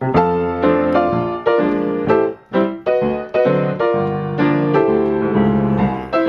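Grand piano played in jazz style: low bass notes and full chords struck in a steady rhythm, about two a second, giving a big, full sound.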